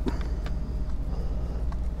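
A steady low hum of background room noise, with no distinct clicks or knocks.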